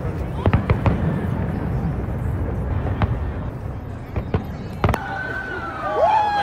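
Fireworks exploding overhead: a quick volley of sharp bangs about half a second in, then single bangs spaced a second or more apart, over a low rumble. Voices rise near the end.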